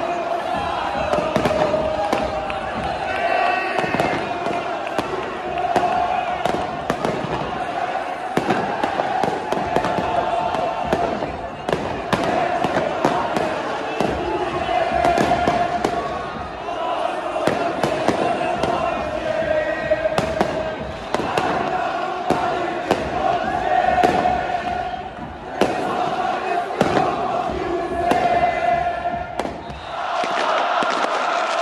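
Football ultras crowd chanting and singing together in unison, with firecrackers going off in many short, sharp bangs at irregular intervals over the singing.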